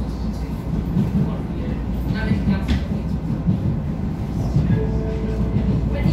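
Vienna U-Bahn Type V metro train running, heard from inside the passenger car: a steady low rumble of wheels on the track with irregular knocks.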